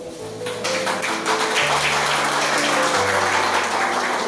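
Audience clapping together with background music that carries a slow bass line.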